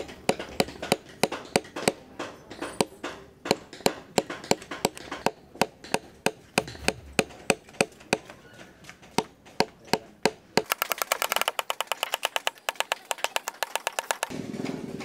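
Wooden mallet striking a small metal chisel to punch the cut-outs of a hide shadow puppet laid on a wooden block: sharp knocks at about three a second. About ten seconds in they turn into a quicker run of lighter taps.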